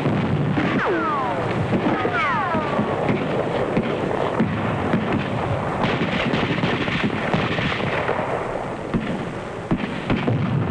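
Continuous battle gunfire, rifle and machine-gun shots packed close together with explosion noise. About one and two seconds in come two falling whistling whines.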